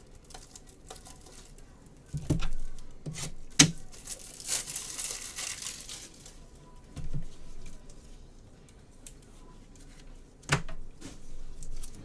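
Plastic card packaging handled on a tabletop: a few knocks and one sharp click, with a crinkling rustle of plastic wrap for about two seconds near the middle.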